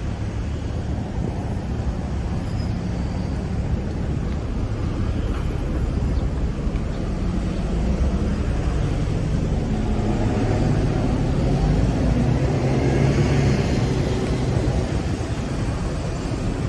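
Steady low rumble of city road traffic, swelling about ten seconds in as a louder vehicle passes and easing slightly near the end.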